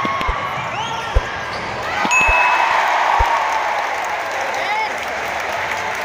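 Basketball dribbled on a hardwood court: four low bounces about a second apart, with sneakers squeaking and the chatter of a packed gymnasium crowd, which swells about two seconds in.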